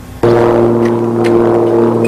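A steady low droning tone of several pitches held together, starting suddenly a moment in and holding unchanged.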